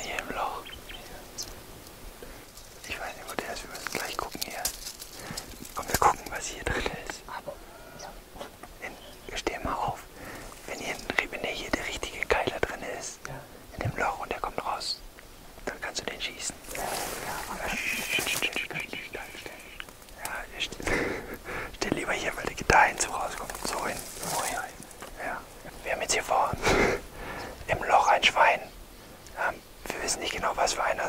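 Two men whispering to each other in short hushed exchanges.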